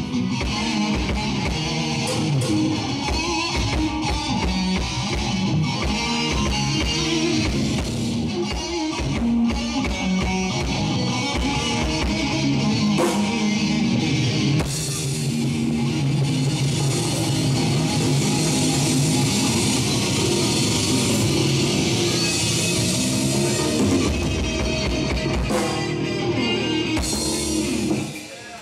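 Live rock band playing an instrumental passage on electric guitars, bass guitar and drum kit, loud and steady, with no singing.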